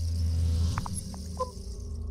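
Produced logo-intro sound effect: a deep drone swelling to its peak about half a second in, under a high shimmering whoosh, with a few short chime-like pings about a second in.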